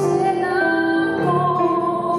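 A woman singing live with acoustic guitar accompaniment, holding long notes that step from pitch to pitch.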